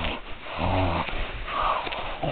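Dog-like play-fight vocal sounds: a low, pitched growl about half a second in, then a higher call near the end, over rustling.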